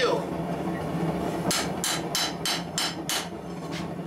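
Hand hammer striking red-hot 5160 leaf spring steel on an anvil: about seven sharp blows, roughly three a second, beginning about a second and a half in.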